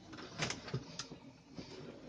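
Sharp metallic clicks and clatter from round-nose pliers and a stripped grounding wire being handled at an electrical distribution panel. There are two crisp clicks about half a second apart, with a softer knock between them.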